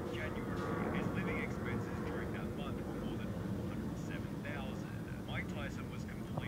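Indistinct narrating voice, too muffled for its words to be made out, over a steady low rumble.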